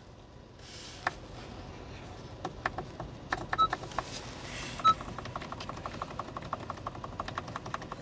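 Clicks of the dashboard instrument-panel brightness buttons being pressed, with two short electronic beeps a little after the middle, then a fast, even ticking over the last few seconds.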